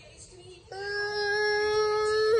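A child's high voice holding one long, steady sung note, starting a little under a second in after a near-quiet start.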